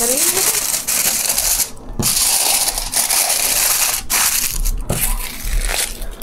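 Aluminium foil sheet crinkling as hands fold it tightly around a rice cake, with a couple of brief pauses between folds.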